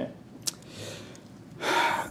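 A man's loud, sharp intake of breath near the end, just before he answers a question, with a small click about half a second in.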